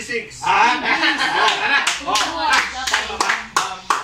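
Several people's voices overlapping, called out during a group guessing game, with a few sharp handclaps in the second half.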